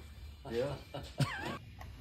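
A short spoken "yeah", then, about a second in, a brief high-pitched yelp that climbs sharply in pitch and falls back.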